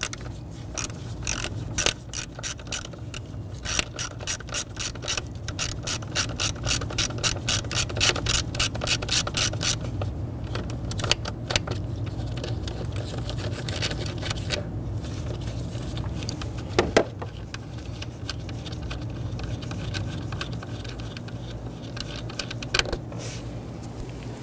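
Hand ratchet with a 5/16-inch socket clicking in quick, even runs of about three to four clicks a second as it backs out small mounting bolts. A steady low hum runs underneath.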